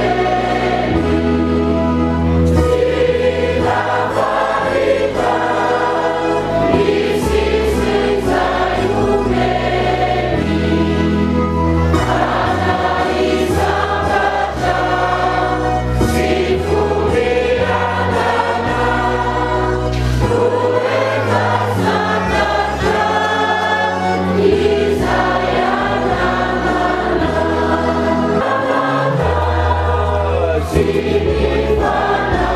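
Choir singing a hymn in parts over an instrumental accompaniment with a deep bass line that steps from note to note, continuous throughout.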